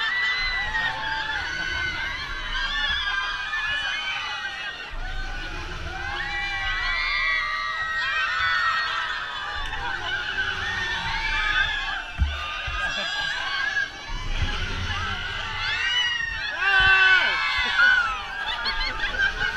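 Riders on a swinging pirate-ship ride screaming, shouting and laughing together, many voices overlapping and rising and falling with each swing, over a low rumble of wind on the camera. The screams swell loudest near the end.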